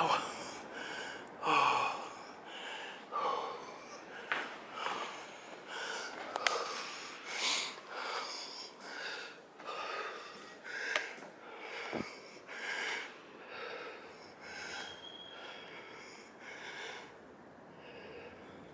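A man breathing hard and fast, panting roughly once a second, out of breath from a long crawl down a dry water-slide tube. A few light knocks come through, twice close together near the middle.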